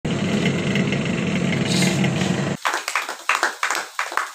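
A steady mechanical hum for about two and a half seconds cuts off suddenly, then several people clap by hand for the rest.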